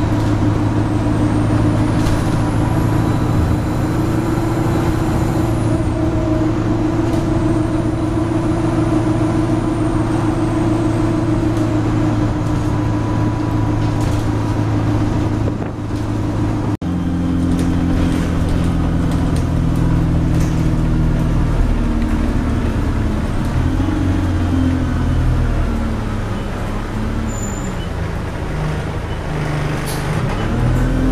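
Alexander Dennis Enviro200 single-deck bus heard from inside the saloon: the diesel engine runs at a steady cruising note with road noise for the first half. After a brief break about halfway, the engine note shifts and falls as the bus eases off, then climbs again near the end.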